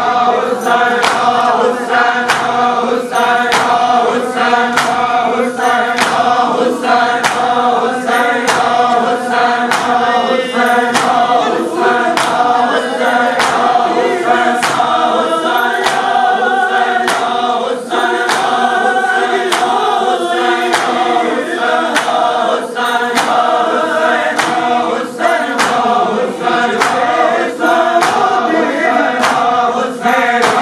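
A crowd of men chanting a mourning lament (noha) together, with sharp, even strikes of hands beating on chests (matam) keeping time at about one and a half beats a second.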